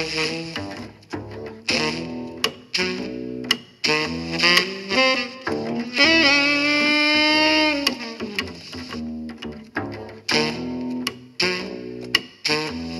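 Instrumental music with a horn lead over strings and bass, played through a pair of Altec 902-8A compression drivers with no horn fitted. About halfway through, the lead holds one long note with a slight vibrato.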